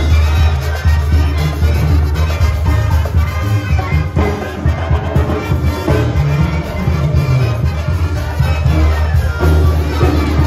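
Live brass band of sousaphone, trumpets and drum kit playing dance music, with a strong, steady bass line underneath.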